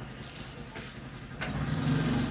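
A single click, then a low steady engine hum that starts about three-quarters of the way in.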